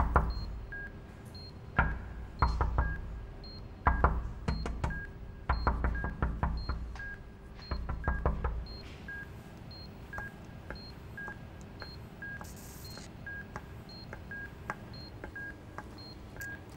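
Electronic beeping: short steady tones alternating between a high and a lower pitch, about two beeps a second. Irregular low thuds with sharp clicks sound over it through the first half, then stop.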